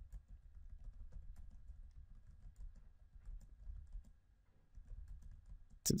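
Typing on a computer keyboard: a run of light key clicks, pausing briefly about four seconds in, over a low hum.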